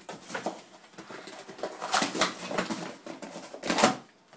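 Cardboard tearing, crumpling and scraping as an English Springer Spaniel rips at a keyboard box with his teeth and paws. It comes in irregular bursts, and the loudest rip is near the end.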